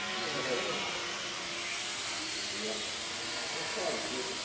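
Blade mQX micro quadcopter's four small brushed electric motors and propellers whirring steadily, with a thin high whine that comes in about a third of the way through.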